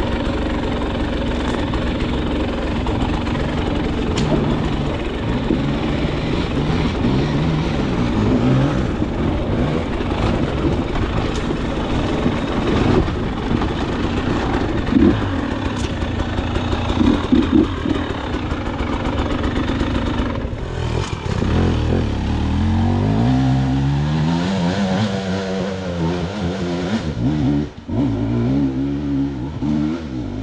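KTM 300 XC-W dirt bike's two-stroke engine running loud and continuous on a trail ride, its revs rising and falling as the throttle is worked. In the last third the sound changes to long rising rev sweeps, with a brief drop near the end.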